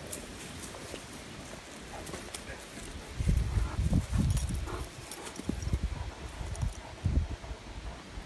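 Irregular low thumps and rustling on dry ground, starting about three seconds in and lasting a few seconds.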